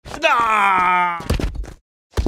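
A man's long yelled battle cry that slides down in pitch. About a second in, it gives way to a quick run of heavy thuds.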